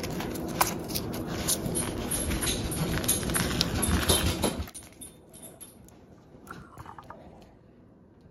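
A paper cupcake liner crinkling and crackling as hands peel it off and crumble a dog cupcake, with many small clicks. The sound stops suddenly a little past halfway, and only a few faint clicks follow.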